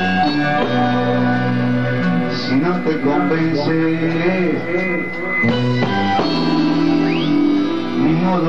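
A live band playing an instrumental passage led by guitar, with sustained notes and chords throughout.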